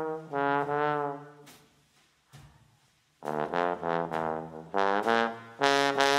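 Bass trombone playing a solo alone: a phrase of held notes, a pause of about a second and a half, then a new run of notes.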